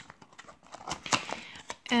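Small cardboard cream boxes being picked up and shifted by hand: light taps and rustles of cardboard, with a short scrape about a second in.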